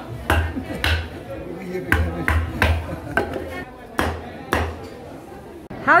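A heavy knife chopping through tuna onto a wooden chopping block, about seven irregular thuds in the first four and a half seconds.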